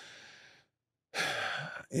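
A man breathing out and then drawing a short, audible breath, like a sigh, close on a microphone.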